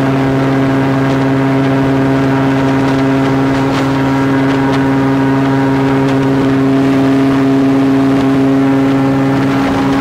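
Airboat engine and propeller running loudly at a steady cruising pitch as the boat moves across the water.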